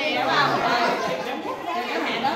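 Several people talking over one another: indistinct crowd chatter of a group of voices.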